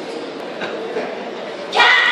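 Steady murmur of a crowd in a large hall, then a sudden loud shout near the end.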